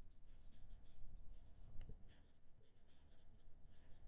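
Marker pen writing on a whiteboard: faint, short scratching strokes, with one sharper tick a little under two seconds in.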